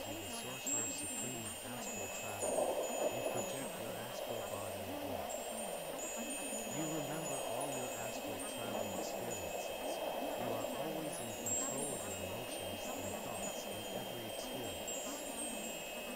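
Ambient meditation soundscape of scattered high, twinkling chime-like tones over a steady high hum, with a low, wavering layer underneath.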